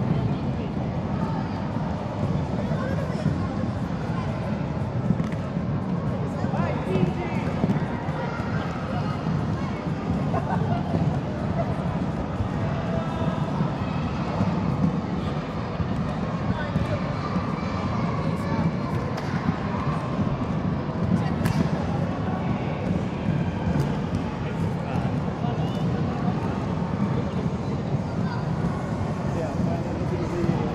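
Many inline skate wheels rolling steadily on a wooden gym floor, mixed with children's voices and calls in a large hall.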